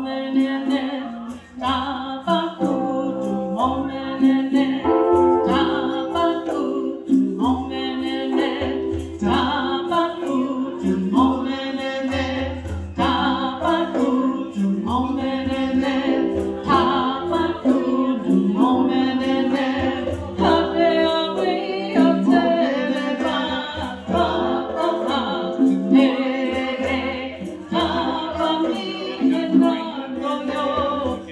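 A woman singing a repeated blessing chant, with a group of voices joining in, over a steady hand-drum beat.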